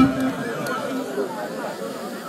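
Music cuts off right at the start, leaving a crowd of wedding guests chattering in the background, several voices overlapping.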